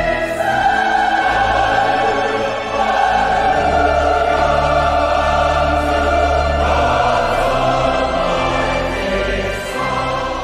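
A large mixed choir of women's and men's voices singing a classical choral piece in full voice, holding long sustained chords, with low bass notes held beneath.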